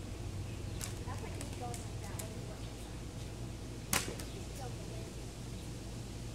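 A few sharp clicks and one louder sharp crack about four seconds in, over a steady low hum, with faint distant voices.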